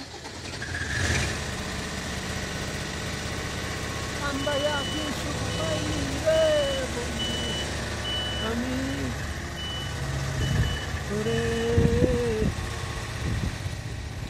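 Boom lift's engine running steadily while its motion alarm beeps, a short high beep about once a second for roughly eight seconds starting about four seconds in.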